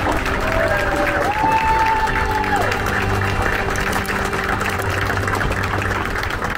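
An audience applauding a welcome, with music playing underneath.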